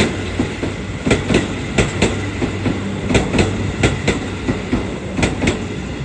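Toei Asakusa Line 5500 series electric train pulling out of the station. Its wheels click over the rail joints in quick pairs every couple of seconds over a steady low hum.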